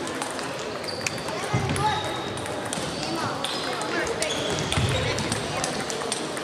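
Table tennis balls clicking off bats and tables, many rallies at once at scattered, irregular times, in a large hall, over a background of voices.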